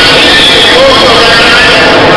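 A man's voice reading a speech through a public-address system, nearly buried in loud, steady, distorted noise that makes the words unintelligible.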